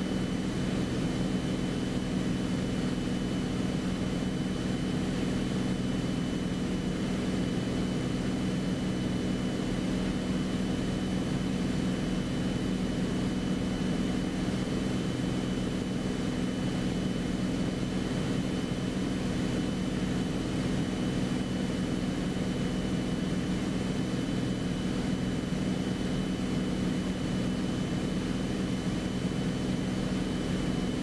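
Beechcraft Bonanza's six-cylinder piston engine and propeller droning steadily in flight, heard inside the cockpit, with a thin steady high-pitched tone above the drone.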